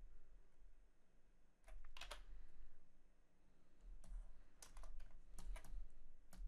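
Faint clicks of computer keys in small clusters: a few about two seconds in, then several more from about four to five and a half seconds.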